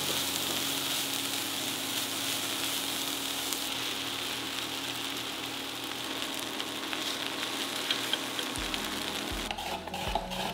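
Julienned carrot and mushrooms sizzling steadily in an oiled nonstick frying pan as they are stir-fried with wooden chopsticks for japchae. The sizzle stops about half a second before the end and gives way to light clicks.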